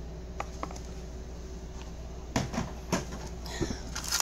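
Handling noise as plastic food containers and small items are moved about in a cardboard box: two light clicks under a second in, then brief knocks and rustles around two and three seconds in. A steady low hum runs underneath.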